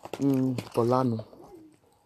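A person's low voice making two short sounds, each falling in pitch, like an "mm-hmm" or "uh-huh".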